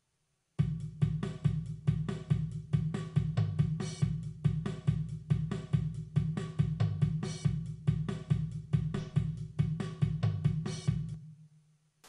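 Drum kit tracks (kick, snare, toms, hi-hat and crash) converted from MIDI play back as a steady beat of evenly spaced hits. A submix EQ cuts the kick's low-end rumble and makes the cymbals sizzle. The playback comes through speakers and is picked up by a room microphone rather than recorded directly, and it starts just after the beginning and stops about eleven seconds in.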